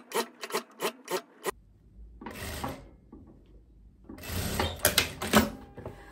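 A quick run of light clicks, then rubbing and rustling of striped linen fabric being handled and fed at an industrial sewing machine.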